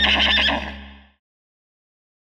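Horse whinny sound effect, its quavering tail over a held low music chord, both fading away about a second in, then silence.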